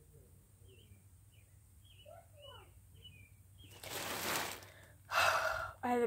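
A girl breathing out audibly: a breathy sigh about four seconds in, then a louder, partly voiced sigh a second later.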